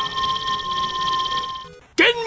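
An 8-bit-style video game energy-charge sound effect for Mega Man's buster: a steady electronic tone with a fast pulsing shimmer above it. It fades out about 1.7 s in.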